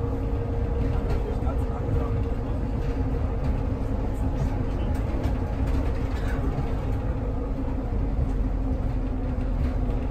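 Car running at a steady speed, heard from inside the cabin: a continuous low engine and road rumble with a steady hum.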